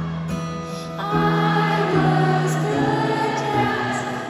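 Concert audience singing along together over the band's live accompaniment, many voices holding long sustained notes.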